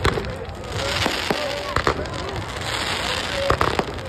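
Aerial fireworks going off in a string of sharp bangs and crackles, with a quick cluster of bangs near the end.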